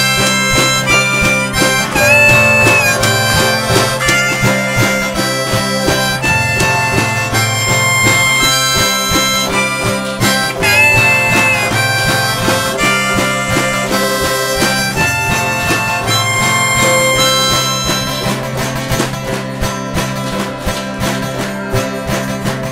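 A folk ensemble playing the instrumental opening of a waltz: strummed acoustic guitars and low chords under a held, stepping melody line, with no singing yet.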